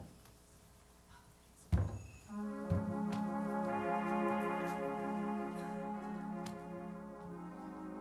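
A loud thump, then a lighter one, and a church organ begins playing a steady held chord about two seconds in.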